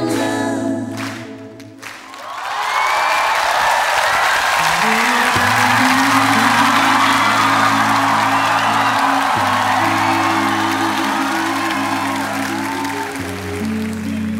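A woman singing into a microphone, her song ending about a second and a half in; then a studio audience applauds over sustained low chords of background music.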